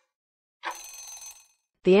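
Short bell-like ringing sound effect, under a second long, marking the end of a quiz countdown timer as the answer is revealed.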